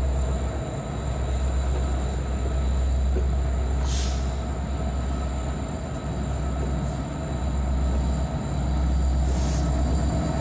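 Norfolk Southern diesel-electric locomotives in a four-unit lashup passing close by, with deep, steady engine rumble and a thin high whine over it. Two short hisses cut through, about four seconds in and again near the end.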